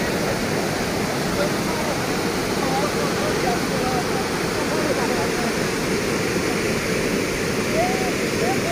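Muddy floodwater rushing and cascading through a breach in an earthen river embankment: a steady, loud, churning rush of water with no let-up.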